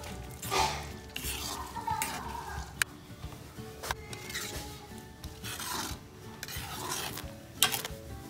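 A metal spoon stirring thick tomato-based spaghetti sauce in a pan, scraping across the bottom in repeated strokes with a few sharp clinks against the pan, while the sauce simmers.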